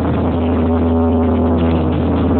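Loud electronic dance music played from a DJ sound system's loudspeaker stacks, with a strong, steady bass.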